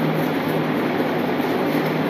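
A steady rushing, machine-like noise with a low hum beneath it that fades out about one and a half seconds in.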